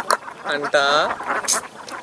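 A man's voice in conversation, with one drawn-out vocal sound near the middle that rises and falls in pitch.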